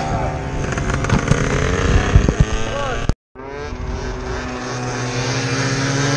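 Motorcycle engine running as the bike is ridden, with wind noise on the helmet-mounted microphone. About three seconds in the sound cuts out for a moment, then returns as a steady engine tone.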